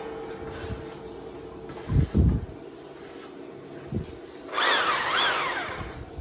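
Electric hammer drill revving up and down twice near the end as its bit is put to a plaster-over-masonry wall to drill a hole. A few low thumps come before it.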